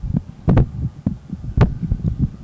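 Handling noise from a handheld PA microphone: irregular low thumps and knocks as it is gripped and moved, with two sharper knocks about half a second and a second and a half in.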